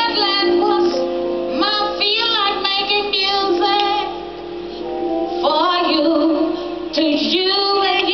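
A woman singing live into a microphone over instrumental backing, her voice gliding and wavering on held notes. Two phrases, with a short break about four seconds in.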